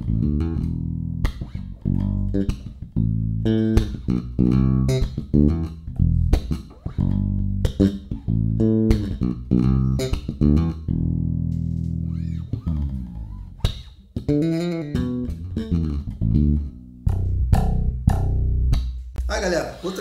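Five-string Warwick Rockbass Corvette electric bass with active MEC pickups and a TB Tech Delta preamp, played fingerstyle: a groove of quick plucked notes, with one long note sliding down in pitch about halfway through. The strings are old and well-used.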